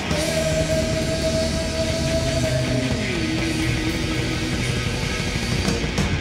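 Heavy metal band playing live, with distorted guitar, bass and drums. One long high note is held over the band and slides down to a lower held note about halfway through; drum hits come in near the end.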